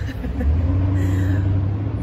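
A motor vehicle's engine running with a low, steady rumble that builds about half a second in.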